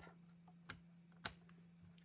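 Near silence with two faint clicks, about two thirds of a second and a second and a quarter in: light taps of a cutting plate being set on top of the die and paper on a die-cutting machine's platform.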